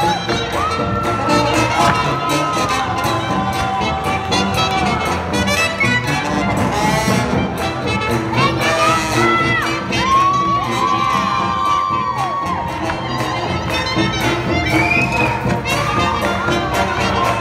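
A live jazz band with trumpets and a sousaphone playing swing music, with a crowd cheering over it.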